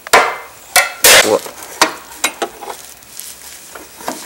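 Metal clanks and scrapes of a pry bar levering the coil spring off a Chevy S-10 door hinge: several sharp strikes, the loudest a burst about a second in, then smaller clinks over the next second and a half.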